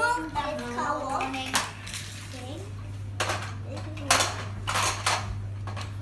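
Plastic toys clattering and rattling in several short bursts as a child rummages through a toy bin. A child's voice is heard briefly at the start.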